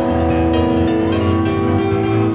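Live rock band playing an instrumental passage with no vocals: held chords over a steady bass, with light cymbal strokes.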